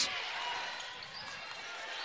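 Basketball game ambience in a gymnasium: a steady low crowd murmur with a basketball bouncing on the hardwood court.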